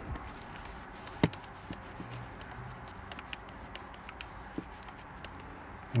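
Microfiber towel wiping polish residue off glossy piano-black plastic console trim: faint rubbing with scattered light ticks, and one sharper click about a second in.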